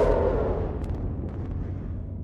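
The low rumble of a blast dying away, with a couple of faint clicks about a second in.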